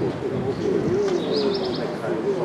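Birds calling: low, drawn-out dove-like cooing, with a brief run of quick high chirps past the middle.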